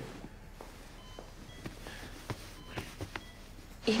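A few light footsteps and soft knocks on a hard floor in a quiet room, with faint short electronic beeps in the background.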